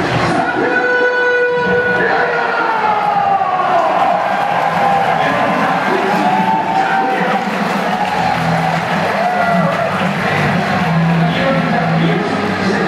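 Ballpark public-address sound during a lineup introduction: music and a drawn-out voice over the stadium loudspeakers, with long held and gliding tones, while the crowd cheers.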